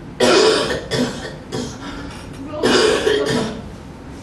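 A man sobbing and crying out in grief in harsh, broken bursts, the loudest just after the start and again about two and a half seconds in.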